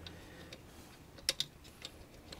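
A handful of light metal clicks and taps, about five, the loudest a quick pair a little past halfway, from a screw and a metal blade bracket being handled against a ceiling fan's motor housing while the blade is fitted.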